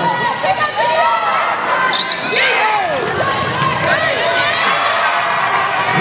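Basketball game on a hardwood court: a ball bouncing, with many short, rising and falling sneaker squeaks from players running.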